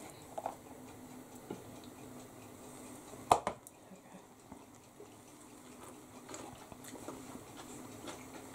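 Light handling of a spoon, bowl and plate: a few soft taps and one sharp clink of the utensil against the dish about three seconds in, over a faint steady hum.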